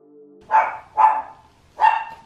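A dog barking three short barks within about a second and a half.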